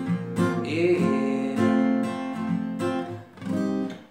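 Strinberg acoustic guitar strummed through the C minor progression (C minor, E-flat, B-flat, F) with chords ringing between strokes, cut off abruptly right at the end.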